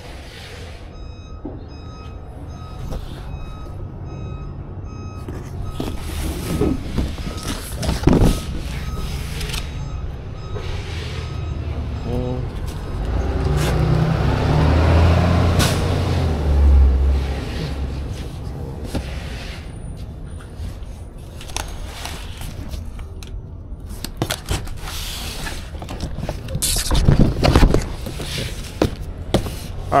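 Heavy vehicle engines rumbling in the street, swelling loudest about halfway through as a large truck runs close by. A repeated high beep sounds during the first several seconds, and there are a few sharp knocks.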